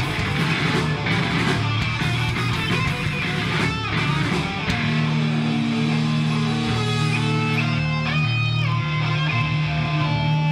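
Punk band playing live, loud and distorted, on electric guitar, bass and drums. About halfway through, the dense playing gives way to long held bass and guitar notes, with a few bent guitar notes near the end.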